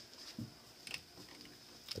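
Faint handling noise of a jetter attachment being fitted to a cast iron sewer cleanout: a sharp click, a soft knock and a few small clicks.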